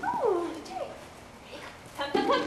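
A dog whining, two calls that slide down in pitch: a long one at the start and a shorter one just under a second in.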